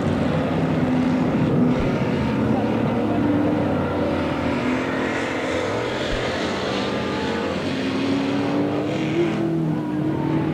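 Engines of several figure-8 stock cars running together at racing speed. Their pitches overlap and shift slowly up and down.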